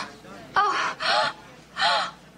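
A woman's breathy moaning gasps, three in quick succession and each bending in pitch: an acted, faked orgasm.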